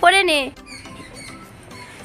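Background song: a voice sings a wavering held note that ends about half a second in, followed by a quieter stretch with short, high chirps.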